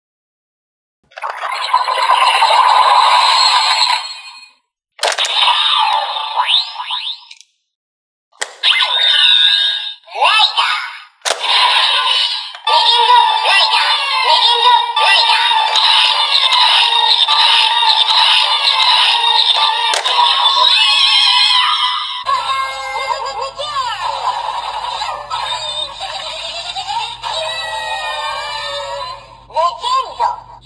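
Electronic sound effects and voice from a Kamen Rider Gavv toy transformation belt with a Legend Gochizo: three short electronic stings, then from about twelve seconds in continuous upbeat transformation music with a shouted announcer voice calling "Legend Rider!". About ten seconds later it changes to a different looping tune.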